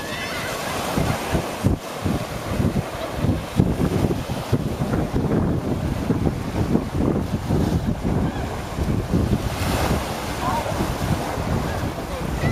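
Small waves washing onto a sandy shore, with gusting wind buffeting the microphone throughout. A few faint voices call out near the end.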